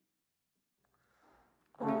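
Near silence, then near the end a wind band led by trumpets, trombones and tuba comes in all together on a loud held chord.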